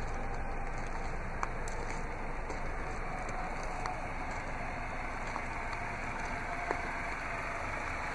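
Steady, low outdoor background noise with a few faint clicks scattered through it.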